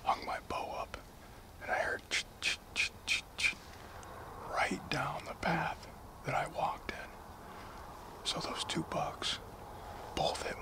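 A man whispering.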